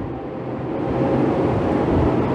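Steady background noise, a low hum with hiss, growing slightly louder across a pause in speech.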